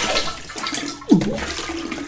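Rushing water, with a short falling gurgle about a second in.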